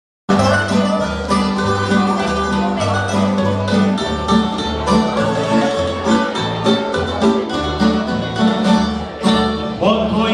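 Tamburitza string band playing an instrumental intro: fast plucked melody and strummed chords over an upright bass moving between two notes about twice a second. A voice enters right at the end.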